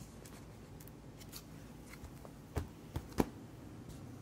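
Faint rustling and clicking of plastic pocket pages in a card binder being handled and turned, with three sharp clicks in quick succession a little before the end.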